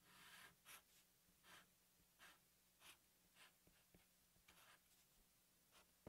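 Near silence, with the faint scratch of a marker drawing on paper in a few short, separate strokes.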